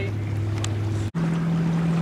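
A boat engine running steadily with a low hum. About a second in the sound cuts out for an instant, and the hum comes back higher in pitch.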